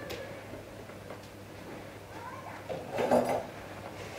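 A spoon scraping and tapping cake batter into an aluminium foil baking pan, with a short louder clatter about three seconds in.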